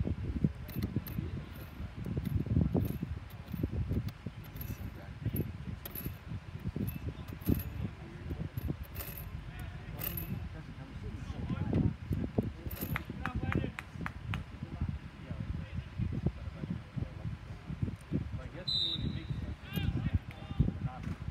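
Gusty low rumble of wind on the microphone, with scattered faint clicks and a brief high whistle about a second before the end.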